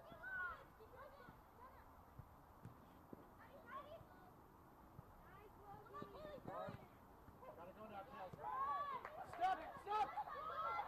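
Several distant voices shouting and calling during a soccer match, too far off to make out words. The calls come and go, then grow louder and more frequent in the last two seconds.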